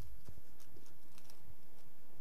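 A few faint, irregular taps or clicks over steady meeting-room background noise.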